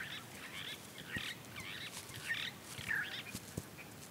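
Birds calling quietly, a repeated short chirping call about every half second, with a few faint ticks underneath.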